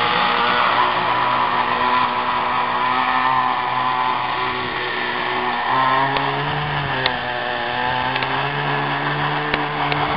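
A radio-controlled air boat's engine and propeller running at speed, the motor note stepping up and down a few times as the throttle changes.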